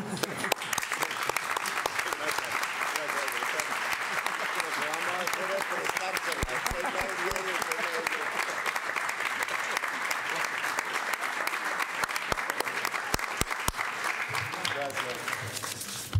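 Roomful of people applauding: dense, steady clapping that dies away near the end, with voices murmuring underneath.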